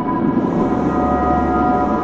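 A steady, loud rumble with sustained drone tones held over it, a dramatic soundtrack rather than a live recording.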